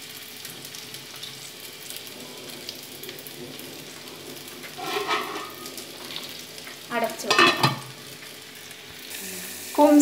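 Steady low sizzle of a banana mixture cooking in a nonstick pan on a gas burner.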